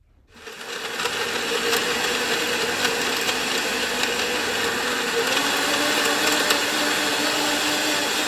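Shardor 1200 W blender's motor spinning up within the first second, then running steadily and loudly as its blades churn a banana and oat milk smoothie in the glass pitcher.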